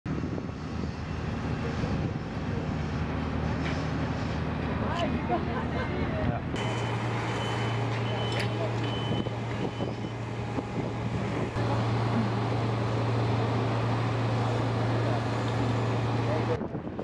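Steady low engine drone of outdoor street ambience, with faint voices in the background around the first third. The drone changes abruptly a few times where clips are cut together and is loudest and steadiest in the second half.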